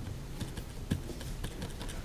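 Scattered light taps and clicks, with a couple of soft thumps, from hands handling things on a meeting table, picked up by the table microphones.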